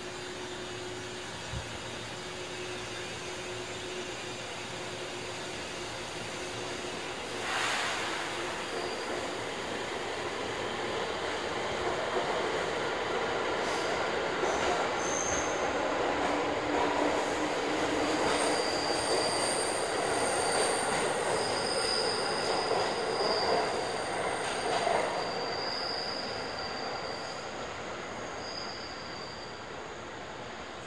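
An electric train moving on a station track, its wheels squealing with thin high tones through the second half as the rumble builds and then fades. A short, loud hiss of air comes about seven seconds in, over a steady hum from an electric train standing at the platform.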